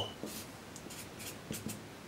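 Felt-tip marker on paper, drawing the lines of a box and then writing, in short faint strokes.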